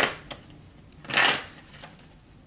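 A person blowing out a breath twice, about a second apart: two short rushing whooshes, the second fuller and longer.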